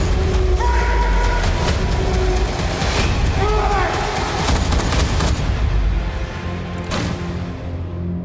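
Trailer score with a heavy low rumble under a rapid run of sharp hits and booms for the first five seconds, then one last big hit about seven seconds in before it fades out.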